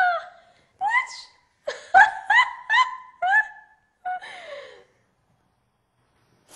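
A woman laughing in short, high-pitched bursts, a quick run of about four in a row partway through, then trailing off into silence.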